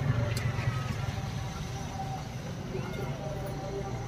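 Street background: a steady low traffic rumble with indistinct voices, and a short metallic clink about half a second in, from a steel spoon against the steel tins.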